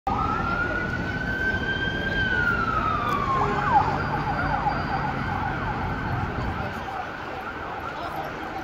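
An emergency vehicle's siren in wail mode, rising slowly and falling once over the first three seconds, then switching to a fast yelp that carries on through the rest. Low traffic noise runs underneath.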